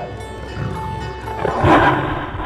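A big cat roaring over background music, swelling to its loudest near the end.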